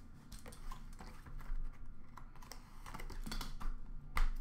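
Light, scattered clicks and taps made by hands at work, at a moderate-low level.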